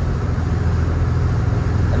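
Volvo Penta IPS diesel engines and hull running steadily at cruising speed, heard inside the enclosed helm station: a constant low drone with an even hiss over it.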